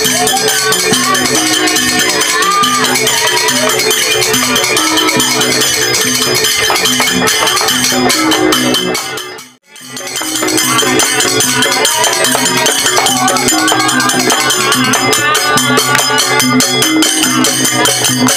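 Live Madurese saronen-style ensemble playing: barrel drums and gongs under a wavering melody, with a fast jingling, rattling percussion layer on top. The music drops out briefly about halfway through and then resumes.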